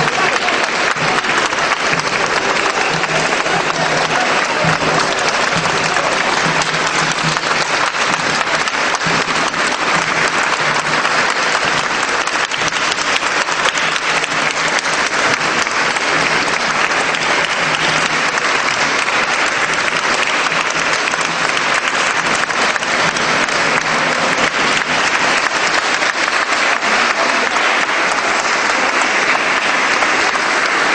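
A large crowd applauding without a break, a dense, even clapping at steady loudness.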